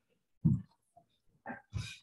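A woman's brief wordless vocal sounds between phrases of a sermon: a low hum-like sound about half a second in, then two short breathy sounds near the end.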